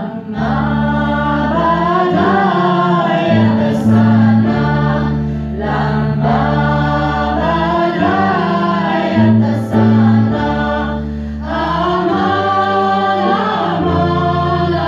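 A women's vocal ensemble singing a Near Eastern Arabic song together, accompanied by a small band over a steady bass line of held low notes.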